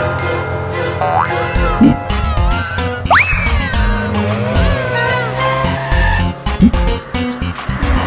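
Backing music for a children's cartoon, with cartoon sound effects over it: a short rising whistle about a second in, a loud steep rising sweep about three seconds in, then wobbly falling slides and springy boings.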